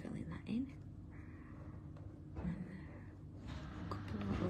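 Fine-tip drawing pen scratching softly over a paper tile in short strokes, against a low steady hum, with a couple of brief faint vocal sounds.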